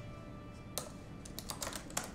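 Quick, irregular typing on a MacBook laptop keyboard, starting about a second in.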